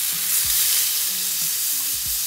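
Marbled beef steaks sizzling steadily in oil on a ridged grill pan over high heat as they are seared and turned with metal tongs.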